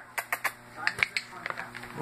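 A quick, irregular run of light clicks and taps, about a dozen in two seconds.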